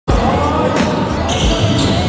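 A basketball being dribbled, low bounces about two-thirds of a second apart, under other layered sound.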